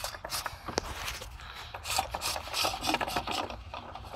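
Cloth work glove rubbing and scraping on the plastic oil filter housing cap of a 2016 Dodge Grand Caravan as the cap is worked by hand, in short uneven strokes with a few sharp clicks.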